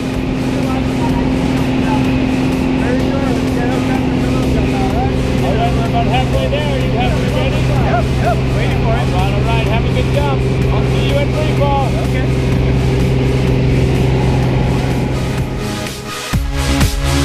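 Small propeller plane's engine droning steadily, heard from inside the cabin while climbing to jump altitude, with indistinct voices over it in the middle of the stretch.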